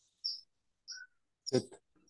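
A few short, high-pitched bird chirps, followed near the end by a man's voice saying a single word.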